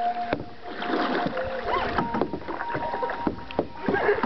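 Canoe being paddled on calm water: paddle strokes and dripping, with a few sharp knocks and a faint steady tone underneath.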